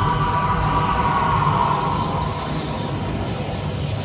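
Anime film soundtrack played back from a screen during a transformation scene: a rushing haze of sound effects with a high tone that slowly falls and fades, over a low steady drone.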